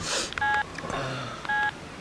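Mobile phone keypad tones as a number is dialled: two short two-tone beeps about a second apart.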